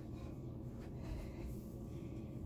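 Quiet room tone with faint rustling from a person moving about on carpet and reaching for dumbbells; no clank of the weights.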